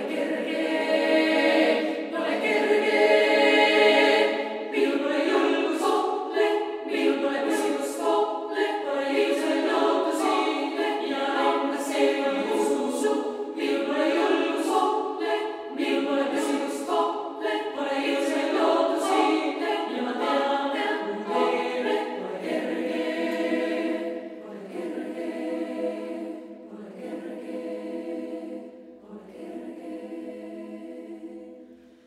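Female choir singing a cappella in Estonian. Several voices sound together with no instruments, and the singing grows softer over the last few seconds.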